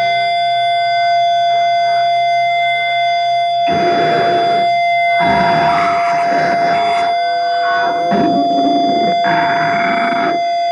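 Loud live band noise: electric guitar feedback holds several steady high-pitched ringing tones, and from about four seconds in, harsh bursts of distorted guitar and drums break in and cut out again every second or so.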